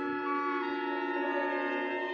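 Several trumpets blown together in one long held blast, a chord of steady overlapping tones at different pitches.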